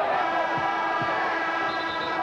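Arena scoreboard horn sounding one long, steady blast over the crowd, signalling a timeout.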